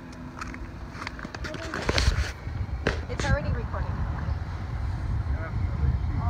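Faint voices over a low rumble of wind on the microphone, with a few sharp clicks.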